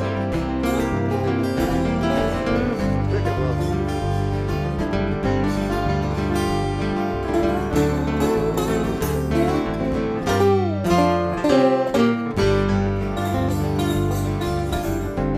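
Acoustic blues band in an instrumental break: acoustic guitars strumming and picking under a resonator guitar played lap-style with a slide. The sliding slide-guitar notes are loudest about ten to twelve seconds in.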